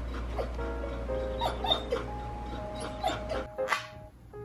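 Bernedoodle puppy whimpering in several short, high whines over background music.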